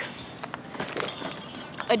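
Light metallic jingling and scattered small clicks while walking.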